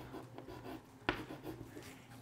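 Chalk drawing strokes on a chalkboard, faint and scratchy, with one sharper tick about a second in.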